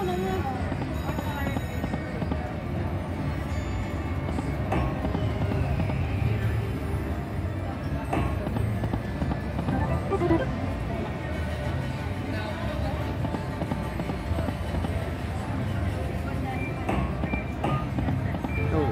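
Huff N Puff video slot machine spinning over and over, its reel-spin sounds and short jingles recurring every few seconds against the steady hum and background chatter of a casino floor.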